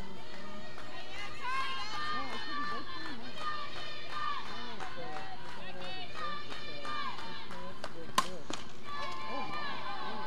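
Several overlapping voices calling out and chanting, typical of softball players' dugout chatter during a game, with one sharp crack about eight seconds in.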